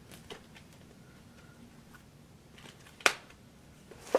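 Tarot cards being handled and shuffled: faint rustles and soft taps, with one sharp card snap about three seconds in.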